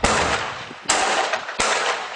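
Rifle gunfire: three sharp shots, one at the start, one just before a second in and one about a second and a half in. Each shot trails off in a long echo.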